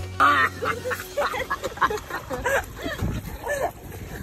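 Teenagers laughing hard, a string of high, squealing cackles that rise and fall in pitch.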